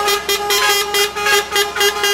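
Truck horns sounding in one long, steady blast, with a fast pulsing over the held tone.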